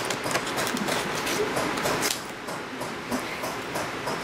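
Paper being handled and cut out by hand: a steady run of light rustles and small clicks.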